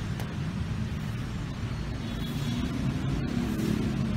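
Steady low rumble of city traffic heard from outdoors, with no distinct events standing out.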